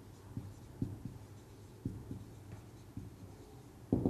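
Felt-tip marker writing on a whiteboard: faint scratching strokes with several light taps of the pen tip against the board.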